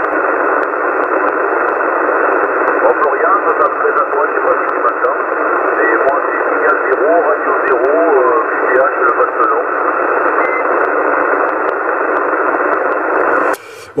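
CB transceiver receiving single-sideband on 27 MHz: a steady, narrow-band hiss of static with a weak, garbled voice of a distant station buried in it. The static cuts off suddenly shortly before the end.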